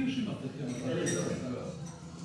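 Restaurant dining-room sound: a brief hummed voice at the start, then a murmur of voices with light clinks of cutlery and dishes.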